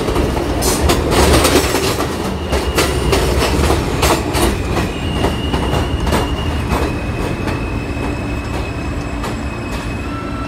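R160 subway car running on elevated track, heard at the car's end door: rapid clicks of the wheels over rail joints over a steady rumble. The clicks thin out and the level eases as the train slows near a station, while a steady high whine holds through the second half.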